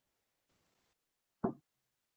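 A single short knock about one and a half seconds in, with near silence around it.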